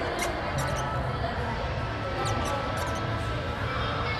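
Marker pen squeaking and scratching in short strokes on a glossy photo print as a name and signature are written, over a steady low hum.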